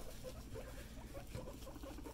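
Guinea pigs making a faint run of quick, short pulsed calls, with light rustling in wood-shavings bedding.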